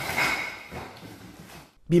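Indistinct background noise, fading away over the second half.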